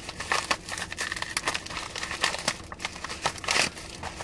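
Paper padded mailer crinkling and rustling as it is handled and opened by hand: a dense run of irregular crackles.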